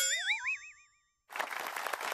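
Cartoon boing sound effect: a springy, wobbling tone with a rising glide, fading out after about a second. About two-thirds of the way through, a dense crackling hiss starts and runs on.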